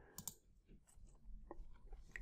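A few faint clicks of a computer mouse: two close together about a quarter second in, and another about a second and a half in.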